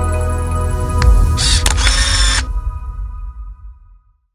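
Logo sting: sustained ambient synth chords over a deep bass swell, a sharp click about a second in, then a bright hissing sound effect for about a second, after which the music fades out.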